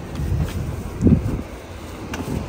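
Wind buffeting the microphone in a low, uneven rumble, with a short, louder sound about a second in.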